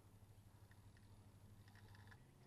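Near silence: a faint steady low hum, with a few faint short ticks near the end.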